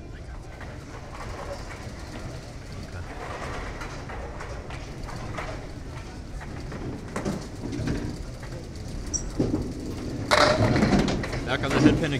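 A candlepin bowling ball striking the pins about ten seconds in: a sudden loud crash followed by a couple of seconds of clattering wooden pins, leaving the 2-4-5 standing. Before it, low murmur of voices in the bowling alley.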